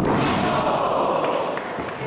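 A wrestler slammed down onto the ring canvas: a heavy thud at the start, followed by a wash of noise that fades over about a second and a half.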